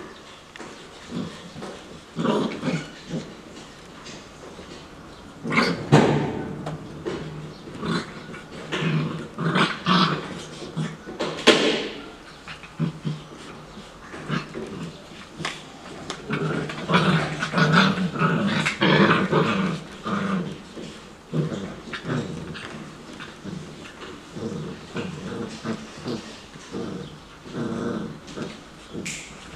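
Young puppies growling in play as they tussle over plush toys, in irregular bursts with a few higher yips. The loudest flare-ups come about a fifth and two-fifths of the way through, then a longer busy stretch past the middle.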